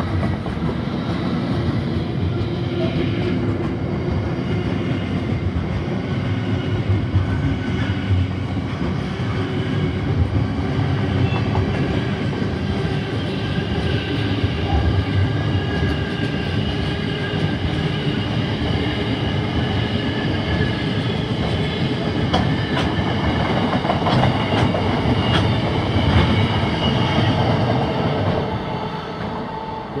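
Container freight train's wagons rolling past close by: a steady rumble and clatter of wheels over the rails, with a faint high squeal from the wheels and sharper clicks as the bogies cross rail joints. The sound fades near the end as the last wagons pull away.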